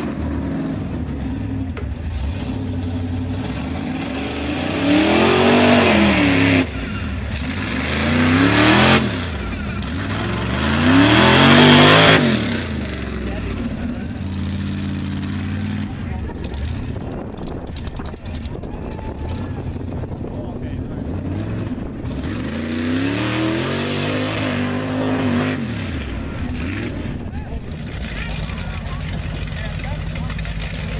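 Mud truck engine revving as it drives through a mud bog. There are three hard revs that rise and fall in pitch, close together in the first half, and one more past the middle, with the engine running steadily between them.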